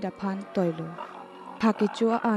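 Pigs grunting and squealing in short, quick calls, with soft background music underneath.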